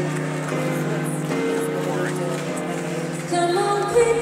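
Live music: slow, sustained chords introducing a song, with a louder entry of higher notes near the end.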